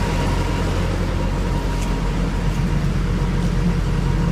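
Truck engine idling: a steady low rumble.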